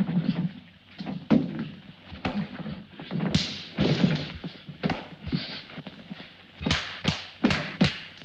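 Two men scuffling in a fistfight: a string of irregular thuds and knocks from blows and grappling, with a quick cluster of sharp knocks near the end.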